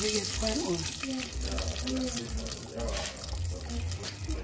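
Red palm oil poured in a steady stream into a large aluminium cooking pot, a continuous pouring and splashing sound.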